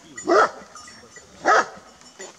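Two short, loud animal calls about a second apart.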